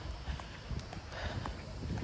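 Footsteps on pavement: a few light, uneven knocks over a faint low rumble.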